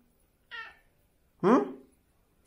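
A domestic cat gives one short, high meow about half a second in.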